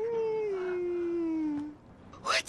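A person's long, drawn-out wailing cry on one held vowel, starting suddenly and sliding steadily down in pitch for nearly two seconds before fading out.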